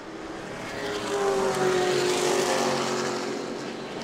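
Sportsman stock car engines running at racing speed on the oval. The engine note swells about a second in, slowly falls in pitch as the cars go past, and fades near the end.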